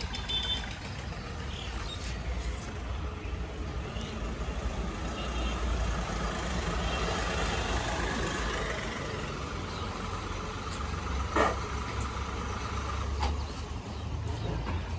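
Mahindra Bolero's diesel engine running at low speed as the SUV pulls in and stands, a steady low rumble, with one sharp knock a little past eleven seconds in.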